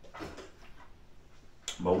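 A man drinking soda from a plastic bottle: a few faint swallows, then a brief sharp sound just before speech resumes near the end.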